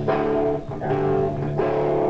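Live band music: electric guitar and bass holding chords that change about every second, with a brief break about two-thirds of a second in.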